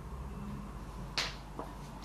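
A single short, sharp click a little over a second in, with a fainter tick just after, over quiet room tone, as small makeup items are handled.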